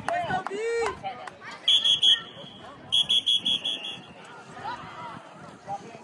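Referee's whistle blown twice, about a second apart: a short blast, then a longer warbling blast.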